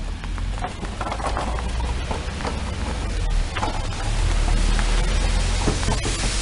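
Steady gritty crunching of a toddler's plastic ride-on toy motorbike and footsteps moving over thin snow on paving, with a constant low rumble underneath.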